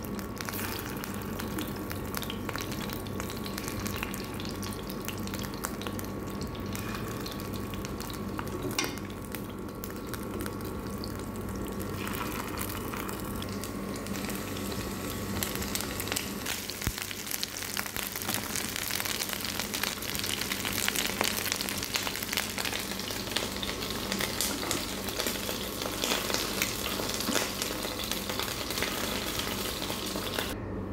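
Coated chicken pieces frying in oil in a nonstick pan: a steady sizzle with fine crackling, which grows busier and louder about halfway through. A faint steady hum lies underneath.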